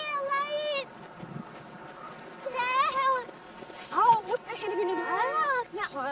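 Voices played backwards: several separate calls with swooping pitch, the busiest and loudest stretch starting about four seconds in.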